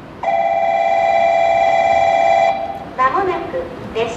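Steady electronic tone from the station's platform loudspeaker, lasting about two seconds, that signals an approaching train. Near the end a recorded woman's voice begins the arrival announcement telling passengers to stand back behind the yellow line.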